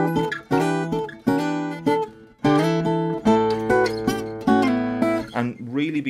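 Steel-string acoustic guitar played fingerstyle in drop D tuning. A run of individually picked notes comes out of an E minor 7 chord, with the melody in fourths over a thumb-picked bass groove, each note left to ring.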